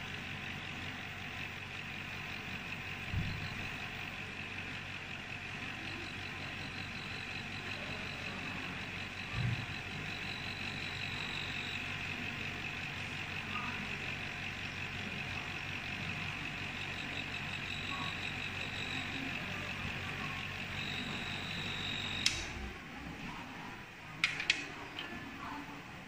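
Benchtop laboratory vortex mixer running steadily, shaking a test tube held down on its cup to mix the contents. It stops with a sharp click about 22 seconds in.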